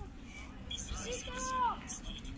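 A person's high-pitched shout, held for most of a second and dropping in pitch at the end, over faint background voices.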